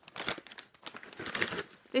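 A shiny plastic snack bag crinkling in irregular bursts as it is handled and held open.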